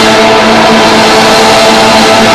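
Live rock band: distorted electric guitars holding a loud sustained chord under a dense wash of noise, steady throughout.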